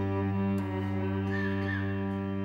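Cello and viola holding steady, unchanging low bowed notes, as in tuning open strings between movements. A faint, brief wavering high sound comes about a second and a half in.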